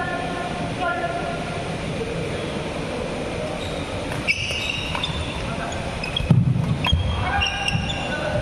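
Badminton doubles rally in a sports hall: rackets striking the shuttlecock in sharp cracks, with a few high squeaks of shoes on the court mat, over the steady chatter of a crowd of spectators.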